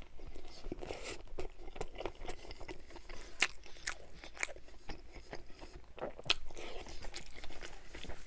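Close-miked mouth sounds of a person chewing a mouthful of a fast-food sandwich: irregular short clicks and smacks, a few of them louder.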